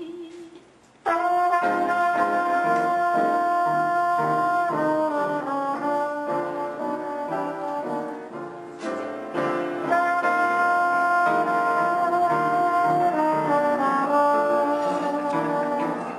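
Trumpet playing a jazz solo over piano accompaniment, entering abruptly about a second in after a brief lull, with several long held notes.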